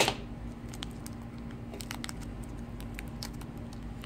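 Faint crinkling and light ticks of a small clear plastic bag being handled and opened by fingers, over a steady low hum.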